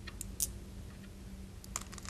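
A few light clicks of Go stones being handled on a wooden board as captured stones are taken off, a few close together near the start and a pair near the end.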